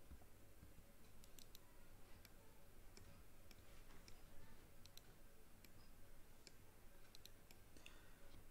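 Faint, scattered clicks of a computer mouse's buttons and scroll wheel at irregular moments over near-silent room hiss, as the 3D view is orbited and zoomed.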